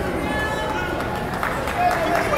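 Gym crowd of spectators and coaches shouting at a wrestling bout, the shouts growing louder near the end.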